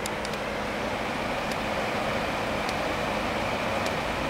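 Steady rain falling outside an open window, a constant hiss with a few faint ticks of drops.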